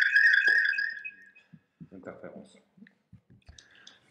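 A high ringing tone fading out about a second in, then faint scattered clicks and rustles.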